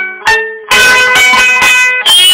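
Tzoura, a small long-necked Greek lute, played acoustically with strummed chords. A chord rings and fades, then strumming starts again strongly about two-thirds of a second in.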